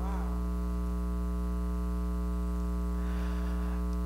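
Steady electrical mains hum in the church sound system: a low drone with a buzz of higher overtones, unchanging throughout.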